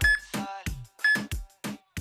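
Background music with sharp drum hits, over which two short high beeps sound about a second apart: a workout interval timer counting down the last seconds of a rest break.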